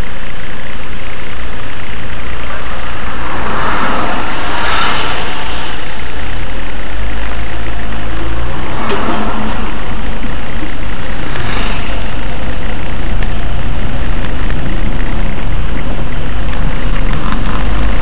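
Car engine and road noise heard from inside the cabin through a dashcam's microphone. The engine idles in stopped traffic, then the low rumble grows about six seconds in as the car moves off. Brief louder swells of noise come a few times, around four to five, nine and twelve seconds in.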